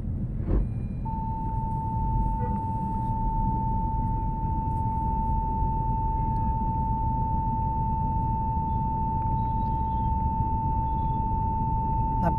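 A single steady tone at one unchanging pitch, starting about a second in and holding without a break, over a low background rumble.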